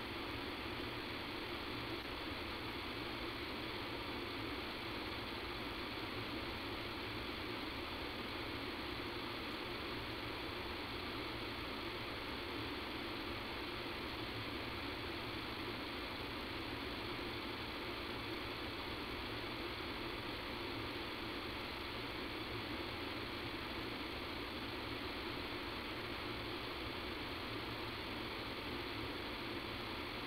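Steady background hiss and hum of a conference-call recording line, unchanging and with no other events.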